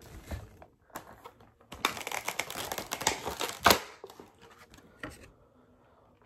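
Clear plastic packaging insert crinkling and crackling as it is handled to pull a vinyl figure out of it, with one sharper crack about three and a half seconds in.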